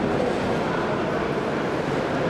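A steady mix of voices from spectators and corner men in a sports hall, with no single sound standing out.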